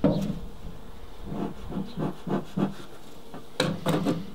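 Sheet-metal-topped wooden bee-box lid rubbing and scraping against the box as it is lifted off, with a louder burst of scraping near the end.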